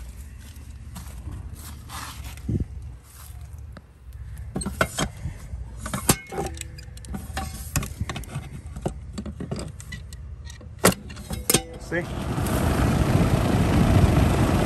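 Clicks and knocks of the disconnect being handled, a sharp clunk as it goes back in, then about a second later the condenser's fan motor starts and runs with a steady rush of air. The compressor is unplugged, so only the fan runs and the breaker holds, which points to a faulty compressor.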